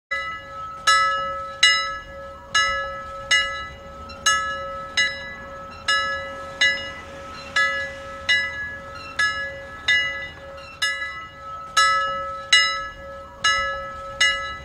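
Intro music built from a bell-like chime struck about once every 0.8 seconds, each strike ringing and fading, over a steady held tone.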